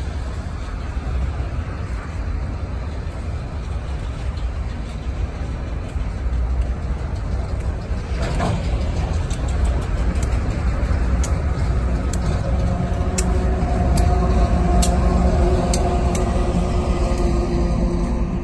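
Slow freight train passing: a steady rumble of autorack cars rolling on the rails, then the end-of-train GE AC4400CW diesel locomotive coming by in the second half, its engine drone growing louder and then easing off, with a few sharp clicks along the way.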